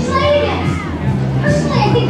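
Film soundtrack over a club's loudspeakers: lively voices calling out over a steady music bed.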